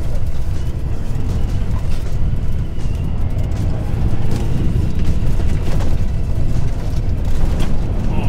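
Ford Bronco driving fast over a dirt trail: a steady, loud low rumble of engine, tyres and wind, with a few short knocks from bumps in the track. Music plays faintly underneath.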